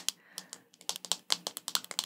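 Fingernails tapping and clicking on a hard plastic star wand: a run of sharp, irregular clicks, sparse at first and coming quicker from about a second in.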